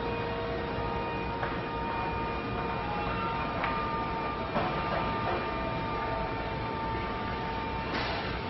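Electric mast lift's 24 V motor running steadily as the platform rises, a steady hum with a few light clicks.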